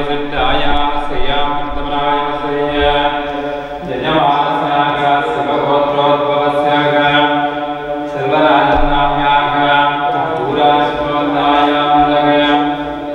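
Hindu mantra chanting in long, held phrases, breaking off and starting again about every four seconds.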